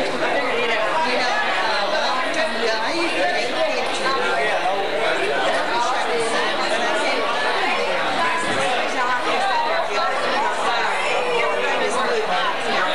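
Chatter of many people talking at once in a large room, their overlapping conversations blending so that no single voice stands out.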